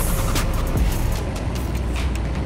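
Music playing over the running engine of a Moffett truck-mounted forklift.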